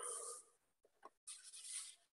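Faint scratchy rustling, heard twice, with silence between.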